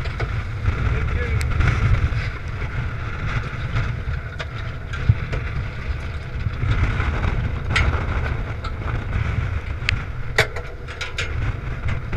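Strong wind buffeting a helmet-mounted camera's microphone on a small boat underway, a constant low rumble mixed with the boat's running noise, with scattered knocks and clicks, one sharper knock near the end.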